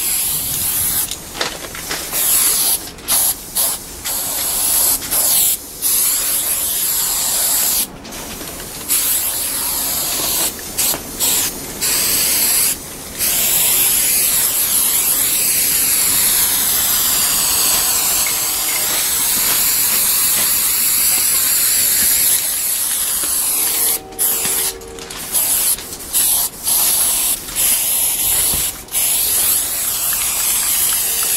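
Aerosol spray-paint can hissing as it sprays, in short bursts broken by quick pauses, with one long unbroken spray in the middle.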